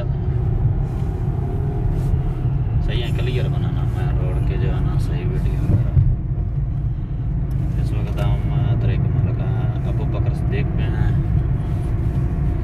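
Cabin noise of a moving car: a steady low rumble from the road and drivetrain, with voices in the car now and then.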